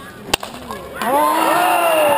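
A single sharp crack of a bike polo mallet striking the ball. About a second later, a crowd of spectators shouts and cheers loudly.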